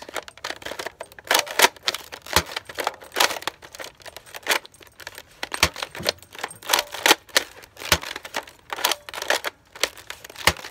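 Irregular sharp plastic clicks and clacks from a toy foam-dart blaster being handled: its magazine and moving parts knocking and snapping.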